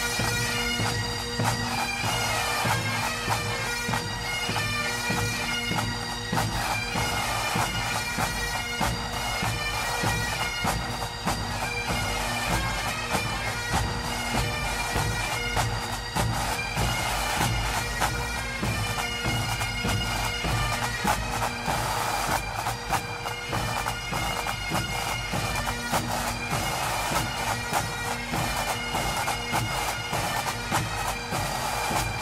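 Bagpipe music: steady drones held under a moving chanter melody.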